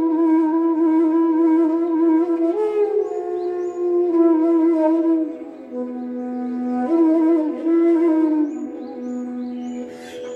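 E-base bansuri (bamboo transverse flute) playing a slow phrase in Raag Manjari: long held notes with a slight waver and slides between them, dropping twice to a lower held note in the second half. A steady drone sounds beneath the flute.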